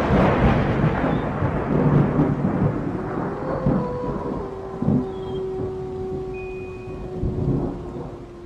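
Thunder rumbling over rain, rolling up again several times as it slowly fades. A low held tone comes in about halfway through.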